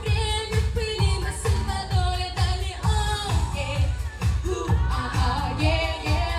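Girls singing a pop song into handheld microphones over a backing track, amplified through the hall's PA, with a steady kick drum about twice a second.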